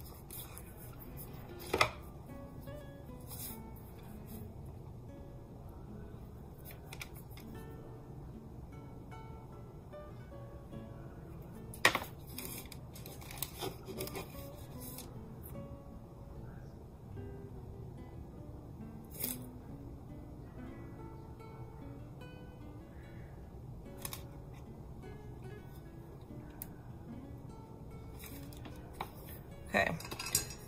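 Soft background music, with a few sharp clicks and taps as craft tools and clay are handled on the table, the loudest about two seconds in and about twelve seconds in.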